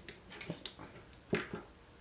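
Light clicks and taps of small hardware being handled and fitted: a screw and small tube knocking against the plastic gearbox and suspension parts of an RC car kit. About five separate clicks, the loudest about a second and a third in.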